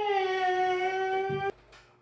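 A man's drawn-out, high nasal whine, "iiing~", held at one steady pitch for about a second and a half and cut off abruptly.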